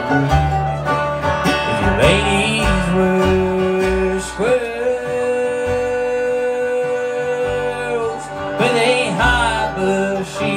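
A bluegrass band plays live on acoustic guitar, mandolin, five-string banjo and upright bass, with a man singing the melody. The voice holds one long note from about four and a half to eight seconds in.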